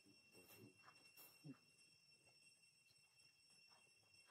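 Near silence, with a few faint, brief voice-like sounds in the first second and a half and a steady faint high hum.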